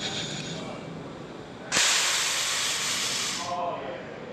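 Compressed air hissing from a small hand-operated air valve on a spring-return pneumatic rotary actuator. It starts sharply with a click about two seconds in, runs for about a second and a half and then stops.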